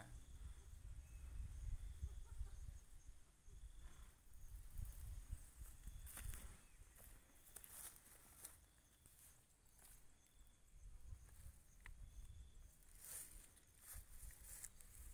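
Faint outdoor ambience: a low rumble on the microphone with a few soft clicks and rustles.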